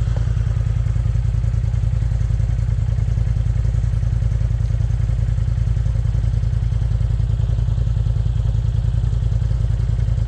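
Side-by-side UTV engine idling steadily with a low, even pulse.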